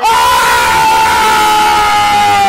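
A man's long, very loud, high-pitched scream of excitement, held on one note that sags slightly in pitch.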